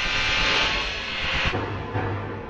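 Intro sound effect: a loud, jet-like rushing noise that starts abruptly and fades over about a second and a half, followed by a low boom near the end.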